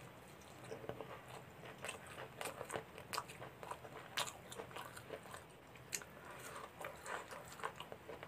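Close-miked chewing of chicken curry and rice eaten by hand: irregular wet smacks and clicks of the mouth, with fingers squishing rice into gravy on a steel plate.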